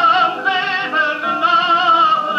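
Operatic tenor singing a Neapolitan song, holding notes with a wide vibrato and moving between pitches a few times.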